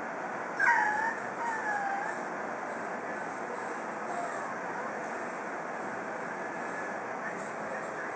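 Boston Terrier puppy whining: two short, high, falling whimpers about a second in and a fainter one about four seconds in, over a steady hiss.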